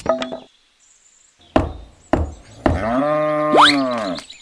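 Sharp hammer knocks on a wooden stake: a cluster at the start, then two single blows about a second and a half and two seconds in. These are followed by a cow mooing for a little over a second, with a short rising whistle over the end of the moo.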